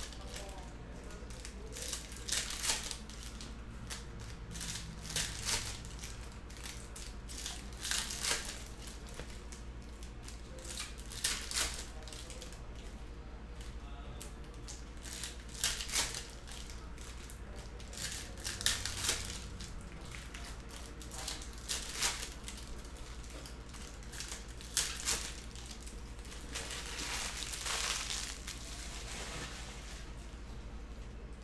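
Foil trading-card pack wrappers being torn open and crinkled, and cards being handled and stacked. The crinkling comes in short bursts every few seconds over a steady low hum.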